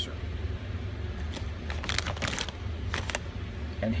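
Plastic parts bag crinkling in a run of short crackles for about two seconds as it is handled and turned over, over a steady low hum.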